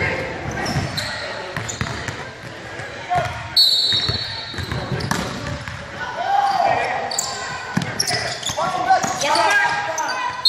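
A basketball bouncing on a hardwood court in a large gym, amid players' shouts, with a few short high-pitched squeaks.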